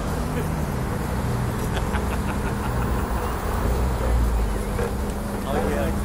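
Road traffic: a steady drone of car engines, with a low rumble swelling about four seconds in as vehicles pass.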